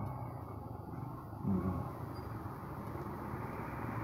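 Steady low engine hum and road noise from moving traffic, heard from a vehicle riding close behind a motorcycle tricycle, with one brief louder sound about a second and a half in.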